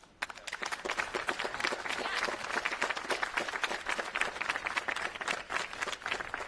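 Crowd applauding: the clapping starts suddenly a moment in and keeps up steadily.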